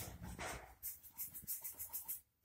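Paintbrush scrubbing and dabbing oil paint onto a plastered wall in quick repeated strokes, a soft rasping about four or five times a second.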